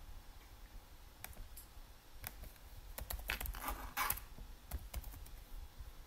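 Typing on a computer keyboard: scattered single keystrokes, with a quicker run of them about three to four seconds in.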